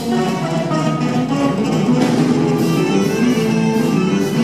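Live rock band playing an instrumental passage, with electric guitars, keyboards and drums, loud and steady.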